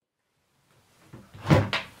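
A door shutting: a light knock a little over a second in, then a louder thud with a quick second knock right after it, as room sound fades in from silence.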